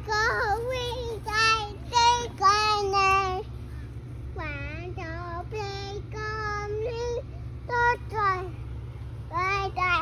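A toddler girl singing without words in a high voice: strings of short sung syllables that swoop up and down in pitch, in several phrases with brief pauses between them.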